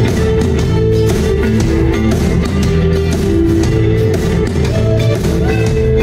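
A live rock band playing loudly: electric guitars over drums.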